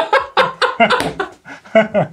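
Men laughing in short, choppy bursts.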